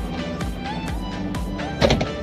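Background music with a steady, evenly spaced beat and held tones, with one short louder sound near the end.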